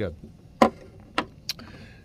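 Three short, sharp metallic clicks of a folding knife being handled and put down, spread over about a second, with a faint rustle of handling near the end.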